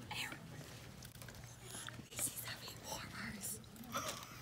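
Quiet whispering and hushed talk, in short scattered bursts.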